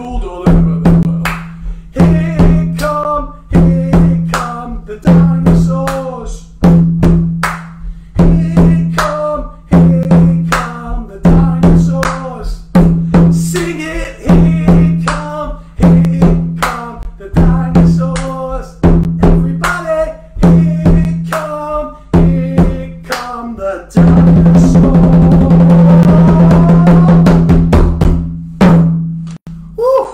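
Hand drum with a skin head played with bare hands in a steady rhythm: a deep bass stroke about every one and a half seconds with lighter strokes between. About six seconds before the end it breaks into a fast, loud roll lasting about five seconds, closed by a single stroke.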